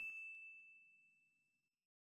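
The dying tail of a 'ding' sound effect: a single high ringing tone fading away over the first second or so, then silence.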